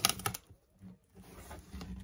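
Cardboard shipping box being lifted and moved by hand: a quick cluster of scrapes and knocks in the first half-second, then faint handling noise.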